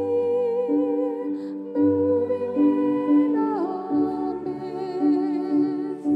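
A slow worship song: a woman singing long notes with vibrato over a Roland digital piano playing held chords and low bass notes.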